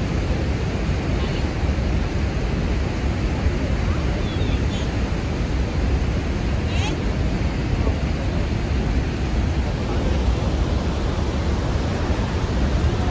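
Steady roar of Niagara Falls' falling water, a deep, even rush that does not let up.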